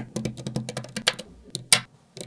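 Small neodymium magnetic balls clicking together as strings of them are pressed onto a block of magnets: a quick run of light clicks through the first second, then a few louder single snaps.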